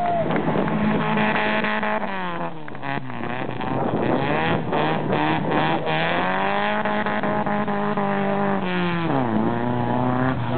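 Ford Sierra rally car's engine revving hard as it powers out of a corner and away. The revs climb and drop twice, about two seconds in and near the end, as it changes gear.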